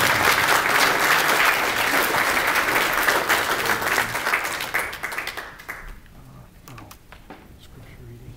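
Church audience applauding at the end of a song, the clapping dying away about six seconds in, followed by a few faint knocks.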